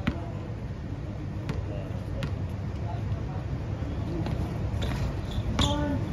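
A basketball bouncing on an outdoor concrete court, three sharp bounces in the first two and a half seconds, over a steady low rumble of background noise.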